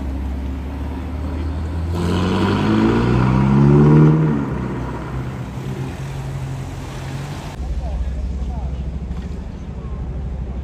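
Ferrari Portofino's twin-turbo V8 accelerating away. Its note rises for about two seconds to the loudest point, then drops sharply and settles to a lower steady drone.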